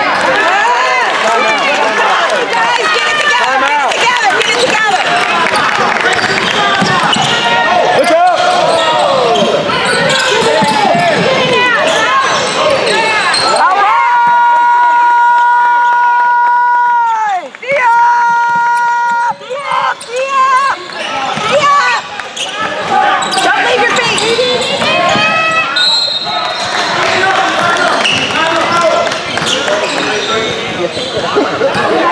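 Indoor basketball game sounds: a ball bouncing, sneakers squeaking on the hardwood court and players and spectators calling out. About halfway through, a gym horn sounds one steady note for about three seconds, then gives a second, shorter blast.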